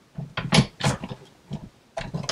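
Big Shot die-cut machine being hand-cranked, pressing a die with cutting pad and base plate through its rollers: a string of short creaks and clicks.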